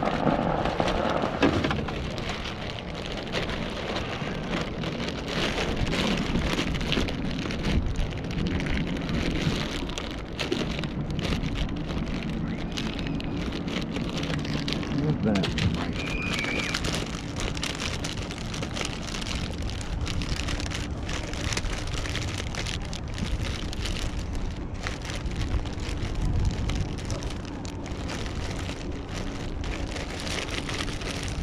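Resealable plastic bag crinkling and rustling as hands rummage through it, a dense irregular crackle that lasts throughout, over a low steady rumble.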